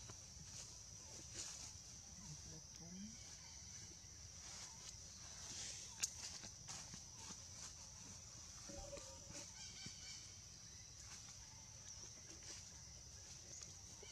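Faint outdoor ambience: a steady high-pitched drone throughout, with a few faint, short animal calls, the clearest a little before nine seconds in, and a single click about six seconds in.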